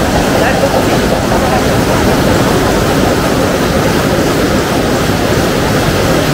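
Loud, steady din of a hall of cold heading machines running, a dense fast clatter as they form screw heads from steel wire.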